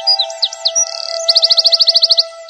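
Birds chirping in short quick notes, then a rapid trill of about fifteen notes a second from about halfway in, over background music holding a steady note.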